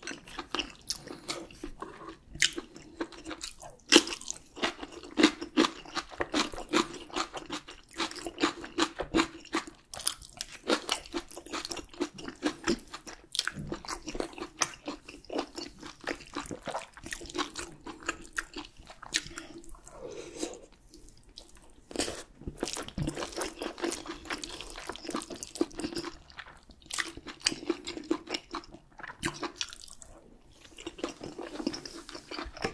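Close-miked eating sounds: wet chewing with crunchy bites and mouth clicks, from a man eating soybean-pulp stew and spicy stir-fried pork.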